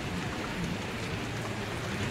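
Steady rain falling on a wet street, with faint scattered drips.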